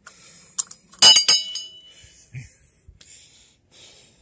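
Small metal bell with a clapper, mounted on a gate post, rung by hand: a few quick clangs about a second in, ringing out for about half a second.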